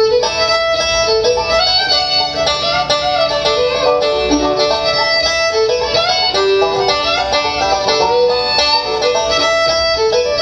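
Live instrumental string-band tune: a fiddle carries the melody over a picked banjo and bowed cello. It plays continuously at a lively, even pace.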